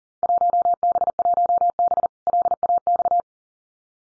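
Morse code at 40 words per minute: a single steady tone keyed on and off in rapid dots and dashes for about three seconds, with one short break about two seconds in. It is a Field Day contest exchange (class and section) being sent.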